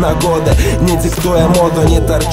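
Hip hop music: a rapped vocal over a beat with a steady bass line and drums.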